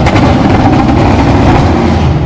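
A motor vehicle engine running loudly and steadily close to the microphone, with its weight in the low bass.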